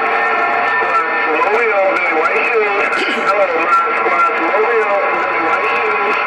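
Received audio from a President HR2510 radio on 27.085 MHz: faint, garbled voices of distant stations in a thin, tinny band, overlaid by several steady heterodyne whistles.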